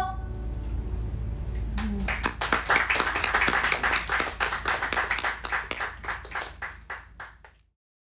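Small audience applauding as a song ends. The clapping starts about two seconds in, swells, then thins out to a few scattered claps and cuts off abruptly just before the end.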